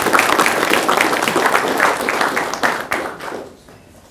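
Audience applauding, the clapping dying away about three and a half seconds in.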